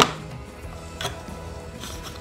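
Quiet background music with a few faint clicks of a plastic air vent being pressed into its dash bezel, one sharp click right at the start.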